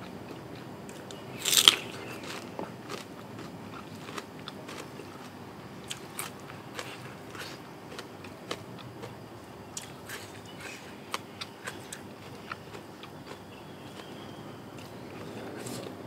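Close-up eating sounds: one loud crisp crunch about a second and a half in, a bite into crunchy raw bitter gourd, then steady chewing with many small wet clicks and smacks.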